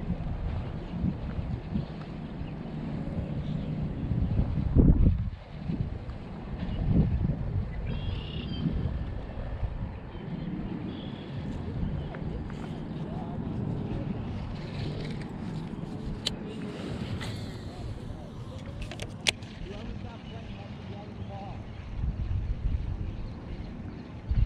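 Wind buffeting the microphone in a steady low rumble, with one stronger gust about five seconds in. A few sharp clicks come in the second half.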